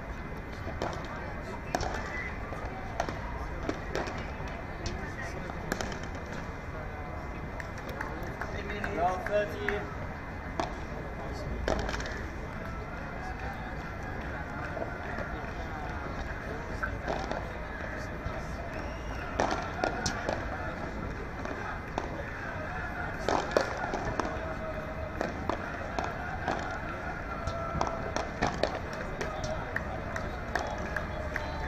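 Padel rackets striking the ball in a knock-up rally, with irregular sharp pocks from racket hits and bounces, over background voices.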